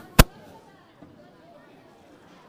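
A single sharp, loud bang just after the start, over faint background voices.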